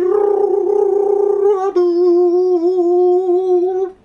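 A man humming long, high held notes in a falsetto voice: the first note rough and warbling for about a second and a half, then a smoother held note that stops just before the end.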